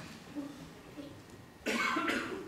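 A single cough near the end, short and loud, after a faint lull.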